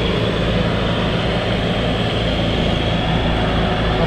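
Heavy-haul transport rig running steadily as it slowly moves the transformer trailer: a constant low diesel drone under an even hiss.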